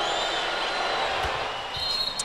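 Arena crowd noise with a few high whistles over it, and a basketball bounced on the hardwood floor a couple of times in the second half, as a free-throw shooter dribbles before shooting.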